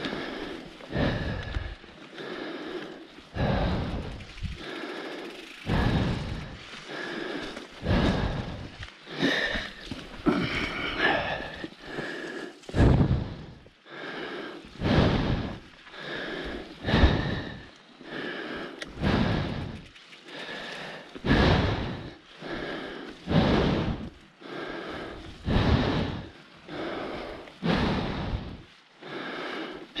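Mountain biker's hard, rhythmic breathing, about one loud breath a second, from the exertion of pedalling up a long climb.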